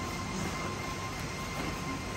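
Steady background noise of a hall, an even rushing hum with a thin, steady high whine over it.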